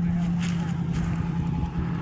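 A vehicle engine running with a steady low hum that cuts off at the end, with a few faint clicks over it.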